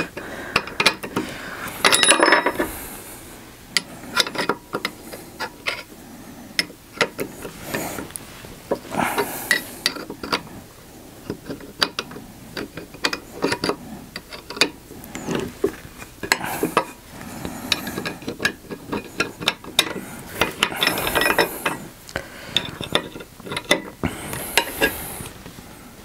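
A hand tool clicking and scraping on metal as a threaded fitting is wound off the hub of an Autoprop H6 feathering propeller. There are many small irregular clicks, with a longer rasping rub every few seconds.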